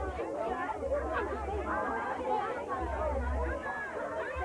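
A group of children chattering, many voices overlapping at once with no single clear speaker.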